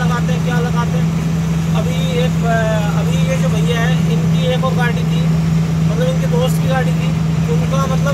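Goods truck engine running with a steady low drone, heard from inside the cab as the truck drives, under a man talking in Hindi.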